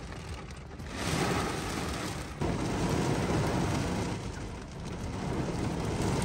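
Heavy rain beating on a car's roof and windows, heard from inside the cabin, a steady hiss that grows louder about a second in.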